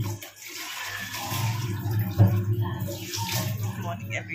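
Kitchen tap running into the sink while utensils are washed by hand, over a steady low hum. The water drops off briefly near the start and comes back, and a sharp clunk of a utensil sounds about two seconds in.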